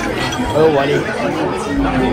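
Several people talking at once: loud, overlapping voices and chatter.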